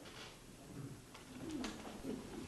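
Faint room noise in a meeting room between speakers: a low, indistinct murmur and a few small clicks.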